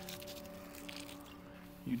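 Water poured from a bottle splashing onto a dry mix of peat moss, perlite and vermiculite in a plastic tub, dampening the rooting media. Soft background music with steady held notes plays under it.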